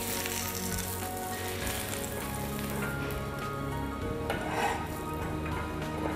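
Pancake batter sizzling steadily on a flat crepe pan over a gas flame, with a spatula scraping under the pancake near the end.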